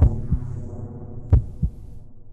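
Heartbeat sound effect: two double thumps (lub-dub), the second pair about a second and a half after the first, over a fading low drone.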